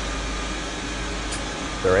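Steady rush of air and machinery noise from a whole-body cryotherapy cabin blowing cold air during a session, with a low hum beneath.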